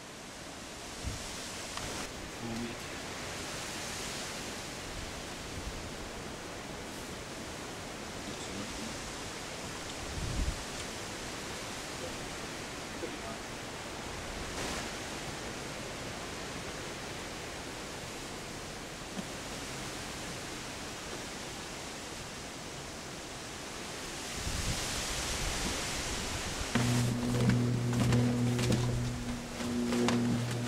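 Steady outdoor noise haze, like wind on the microphone, with no clear separate events. A steady low hum comes in near the end.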